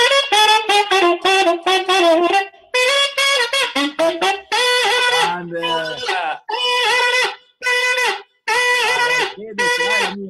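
Plastic saxophone played: a quick run of short notes, then a string of held notes at much the same pitch, each about half a second to a second long with brief breaks between them.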